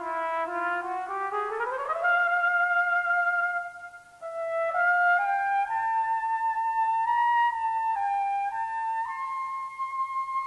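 Solo cornet playing a held low note, then a quick rising run up to a long sustained note, and after a short breath climbing step by step to a high note that it holds.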